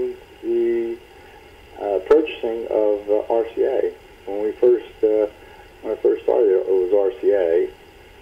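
Speech: a voice talking in short phrases with brief pauses.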